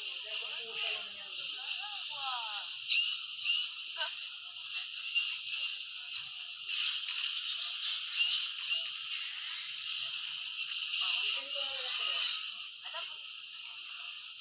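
A dense jumble of many cartoon video soundtracks playing on top of each other, with chattering voices and music blurred into one tinny wash with almost no bass. Short louder blips poke out of the mix every second or so.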